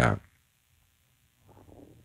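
A man's voice ends a word, then near silence, broken by a faint short sound about a second and a half in.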